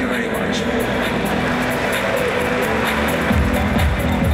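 Live band music with a drum kit, the bass drum beat coming in strongly a little over three seconds in, with voices mixed in.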